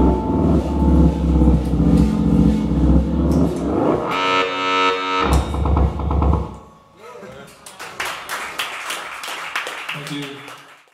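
A live rock trio of electric guitar, electric bass and drums plays out the end of a song on a held ringing chord, which stops about seven seconds in. Voices and a few scattered claps follow in the room.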